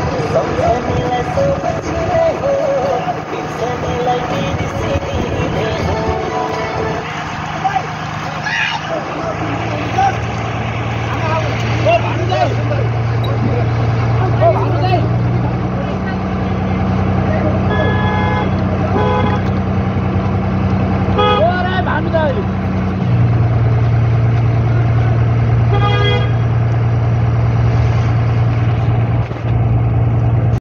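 Bus engine running as heard inside the cabin, its low hum rising in pitch around the middle and dropping back later. A horn sounds in short rapid toots several times in the second half.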